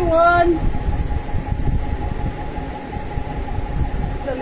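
Steady mechanical hum: a low, uneven rumble with a constant mid-pitched whine under it. A woman's words trail off about half a second in.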